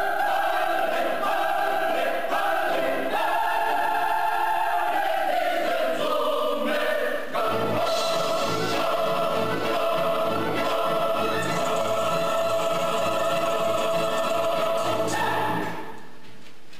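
Choir singing slow sustained chords with accompaniment: the voices move through a few held notes, then hold one long chord over a low repeating bass from about seven seconds in, and the music drops away near the end.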